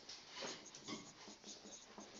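Faint marker-on-whiteboard writing: a few short, soft squeaking strokes as letters are drawn.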